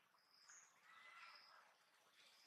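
Near silence, with a few faint, brief high chirps from birds.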